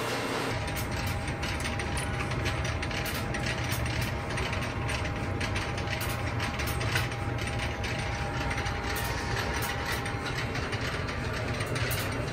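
Electromechanical telephone switching equipment clicking and rattling continuously in a dense, irregular clatter, with a faint steady tone underneath.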